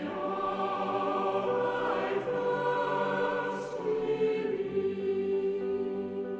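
Church choir singing sustained notes, accompanied by piano and violin, with the chord shifting a couple of times.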